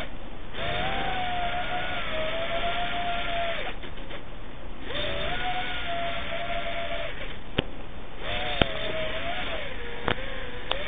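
FPV quadcopter's brushless motors and propellers whining through the onboard camera's microphone over a steady rush of wind. The pitch rises and falls with the throttle and drops away twice, near the start and about four seconds in. A couple of sharp clicks come near the end.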